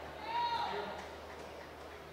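A brief, faint voice calling out once in a large hall, over a low steady hum.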